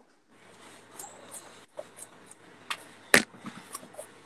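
Light thumps and taps of feet landing while skipping in place, about two or three a second, over faint hiss. One sharper knock about three seconds in is the loudest sound.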